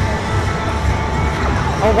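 Busy arcade din: game music and a steady low rumble, with a voice coming in near the end.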